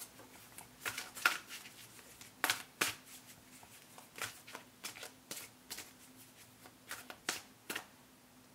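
Oracle cards being shuffled by hand: an irregular series of short card slaps and flicks.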